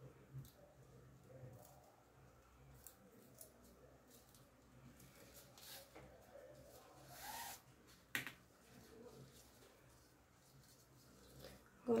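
Faint rustling and small clicks of grosgrain ribbon and sewing thread being handled as a bow is hand-stitched, with a longer swish about seven seconds in and a single sharp click just after it.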